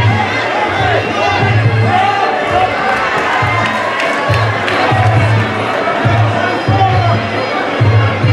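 Fight-night crowd shouting and cheering over background music with a steady bass beat.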